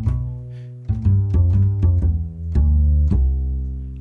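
GarageBand's bass guitar instrument on an iPad, played from a MIDI controller keyboard: a run of about nine deep plucked bass notes, some held and some quick.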